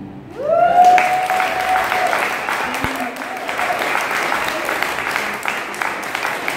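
Audience applauding at the end of a song. Near the start, one person gives a whoop that rises and holds a high note for over a second.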